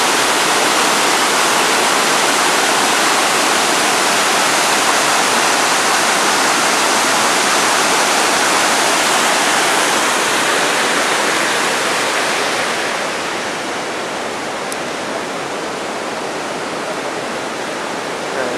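Rushing white water of Rogie Falls pouring over rock, a steady even rush that turns somewhat quieter about two-thirds of the way through.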